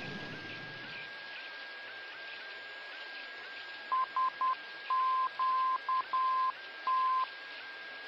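A steady hiss with a faint high tone under it; about halfway through, a single-pitched electronic beep starts sounding in a run of short and long pulses, like Morse code, then stops before the end.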